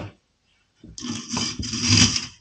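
A coil recoil spring scraping as it is slid over a shotgun's steel magazine tube. The scraping rustle starts about a second in and lasts about a second.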